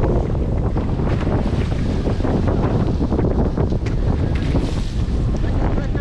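Wind buffeting the microphone with the steady rush of wind-blown sea and spray under a wing-foil board riding fast downwind.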